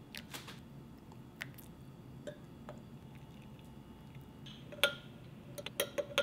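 A thin stream of water trickling faintly into a glass teacup at first, then a metal spoon stirring and clinking against the glass cup several times near the end, each clink ringing briefly.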